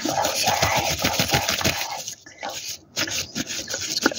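Fingertips rapidly tapping and rubbing on the camera lens, right against the microphone, as a dense run of soft scratchy taps. The taps break off about two seconds in and resume near the end.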